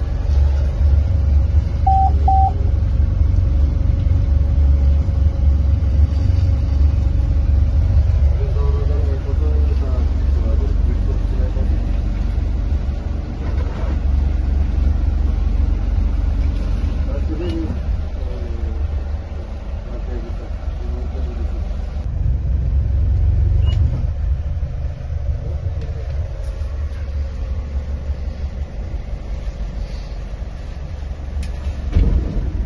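A rescue boat's engine running under way, heard from inside the wheelhouse as a steady low rumble, with faint muffled voices over it.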